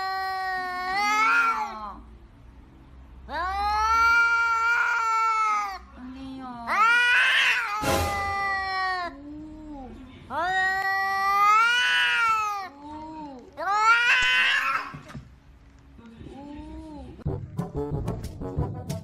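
A domestic tabby cat giving a series of long, drawn-out meows, about six calls, each rising and then falling in pitch, with short pauses between them. There is a single sharp click about eight seconds in.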